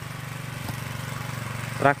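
Steady low hum of a small engine running in the background, with a fast, even flutter in its loudness.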